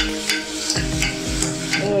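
Steel ladle scraping repeatedly against the inside of an aluminium pressure cooker while stirring sliced onions and green chillies frying in it, over a steady frying hiss.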